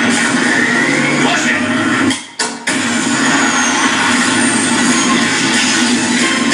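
Movie soundtrack playing: loud music with voices mixed in, dropping out for a moment about two seconds in.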